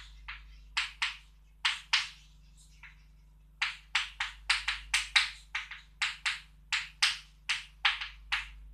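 Chalk tapping and scratching on a blackboard as formulas are written: a quick, uneven run of short strokes, about twenty in all, with a pause of about a second and a half a little before the middle. A faint steady low hum runs underneath.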